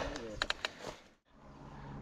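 A few short, faint clicks, then the sound cuts out almost completely for a moment before a faint steady hiss returns.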